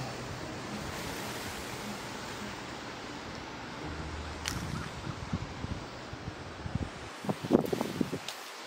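Steady wind-like rustle of an outdoor recording, with scattered soft brushing and knocking sounds in the second half, a short cluster of louder ones near the end.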